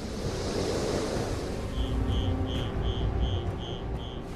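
A rush of floodwater, then from about two seconds in an electronic alarm beeping rapidly, about two and a half beeps a second, over a low rumble.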